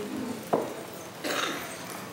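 A sharp knock about half a second in, then a short rustle: handling noise on the pulpit microphone as people change places at it.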